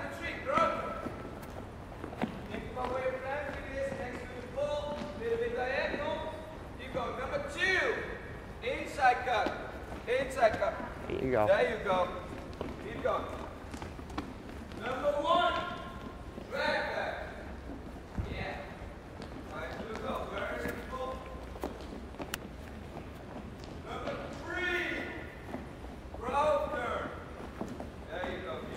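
Voices calling out across a gymnasium, with soft thuds of soccer balls being dribbled and feet on the hardwood floor underneath.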